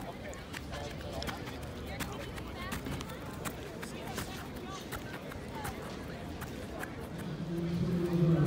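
Faint voices of people talking in the distance, with scattered sharp clicks. Music with held notes comes in near the end.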